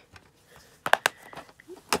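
Plastic DVD case being handled and clicked shut: a couple of sharp clicks about a second in and another near the end.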